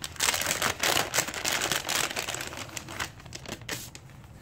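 Metallized plastic packaging bag crinkling and crackling as it is opened by hand and a leather armrest cover is pulled out of it, loudest for the first couple of seconds, then thinning out.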